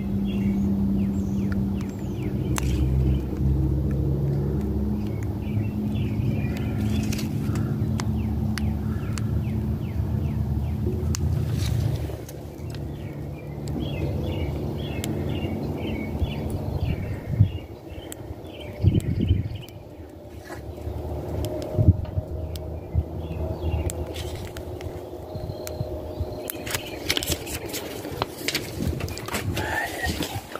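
A low motor rumble, loud for about the first twelve seconds, then dropping to a weaker rumble. Small birds chirp throughout.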